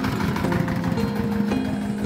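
Small engine of a homemade three-wheeled motor van running with a rapid low chugging as the van passes close by, heard under background music with sustained plucked-string notes.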